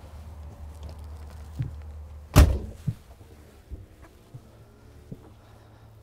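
A door shutting with a single loud thunk about two and a half seconds in, followed by a smaller knock and a few light knocks; a low steady hum heard before it is much quieter afterwards.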